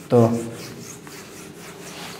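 Whiteboard eraser rubbing across the board in repeated back-and-forth wiping strokes, wiping off old working.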